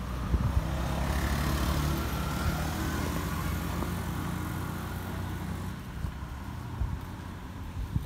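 A motor vehicle driving past, its engine hum and tyre noise swelling over the first couple of seconds and fading away by about six seconds in.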